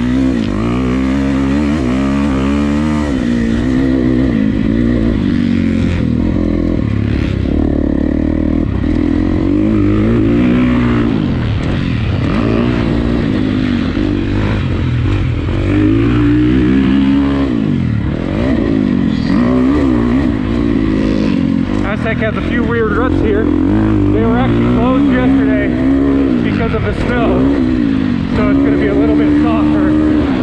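2019 Husqvarna FC350, a 350cc single-cylinder four-stroke motocross bike, being ridden, its engine revving up and falling back again and again as the throttle is worked. The rider is holding it in third gear and not pushing it yet.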